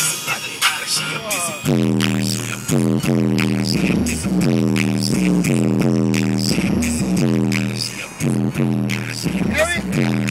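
Music playing loudly on a car stereo, a low pitched line that slides up and down about once a second over a steady beat.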